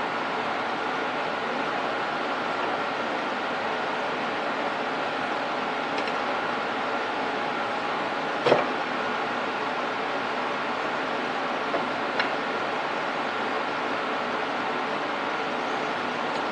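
Steady mechanical hum and hiss of a workshop background machine, even throughout. A sharp metallic click comes about eight and a half seconds in, with a few fainter clicks later, as the metal parts of a hand-built dividing head are handled.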